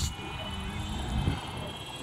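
Electric motor and propeller of a Durafly Goblin Racer RC plane running steadily in flight.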